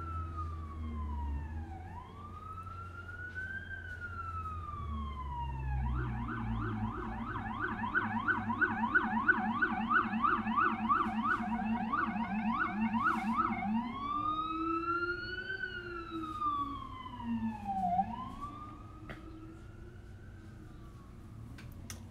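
An emergency vehicle's siren going by: a slow rising and falling wail, switching about six seconds in to a fast yelp of roughly three sweeps a second, then back to the slow wail around fourteen seconds in and fading near the end.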